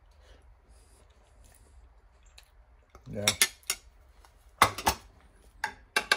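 A metal fork clinking sharply against a glass baking dish and a plate, a few separate clinks in the last two seconds, as a piece of baked crust is picked off the top of the cake.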